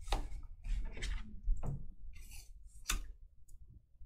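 Handling noises at a desk: a handful of sharp clicks, with a brief rustle a little after two seconds.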